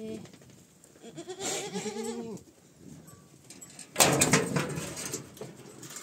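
Goat bleating: the end of one call at the start, then a second wavering call about a second in. About four seconds in, a sudden loud burst of rustling and knocking takes over.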